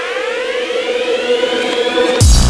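Electronic dance-music build-up: a synthesized siren-like riser sweeping steadily upward in pitch over a held tone, growing slightly louder.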